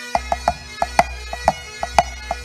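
Pipe band snare drum playing a rudimental pattern of sharp strokes, about five a second in an uneven rhythm, over a steady sustained drone.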